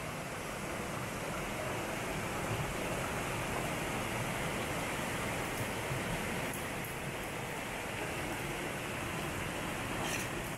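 Steady rush of a rocky mountain stream pouring over a small cascade.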